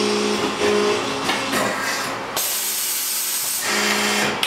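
Arburg 370C hydraulic injection moulding machine running: a steady hydraulic hum fades out about a second in. About two and a half seconds in comes a loud hiss lasting about a second, and the hum returns near the end.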